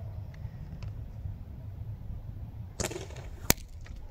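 ASG Urban Sniper spring-powered bolt-action airsoft rifle, upgraded to about 3 joules, firing a shot: a brief rustling burst, then a single sharp crack near the end.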